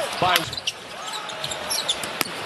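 Arena sound of a basketball game: crowd noise with a few short, high squeaks of sneakers on the hardwood court, after one sharp knock just after the start.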